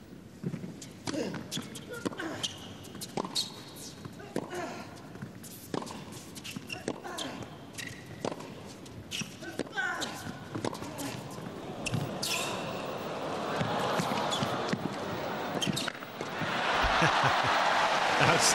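A tennis rally on an indoor court: sharp racket-on-ball strikes and ball bounces with short squeaks from the players' shoes. Near the end the crowd breaks into applause as the point is won.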